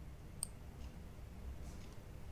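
One sharp click about half a second in and a few fainter clicks later, over a low background hum: computer mouse and keyboard clicks during drawing work.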